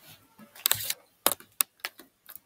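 Sharp clicks: a quick cluster a little over half a second in, then three single clicks about a third of a second apart.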